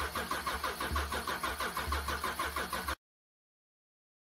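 GM 3.6L V6 being cranked by the starter, a steady rhythm of about seven pulses a second that cuts off suddenly about three seconds in. Its intake cam phaser is not locked and is failing, the fault behind this engine's clacking from the top end.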